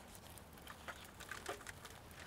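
Faint rustling and soft scattered clicks of potting soil and a plant pot being handled as a plant's root ball is worked loose.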